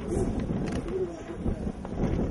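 Pigeon cooing, two short low coos, over a steady low background rumble.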